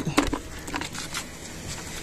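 Faint scattered light taps and clicks of small fish and a nylon cast net being handled on concrete as the catch is picked out.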